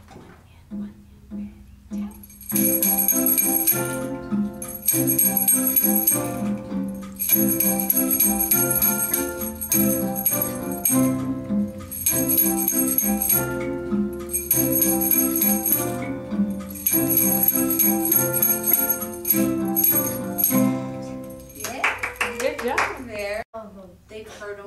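Digital piano music with a jingling percussion backing, played in short phrases with brief breaks between them; it stops about 21 seconds in and a voice follows.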